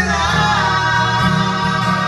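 Live acoustic song: male voices singing long held lines to two strummed acoustic guitars.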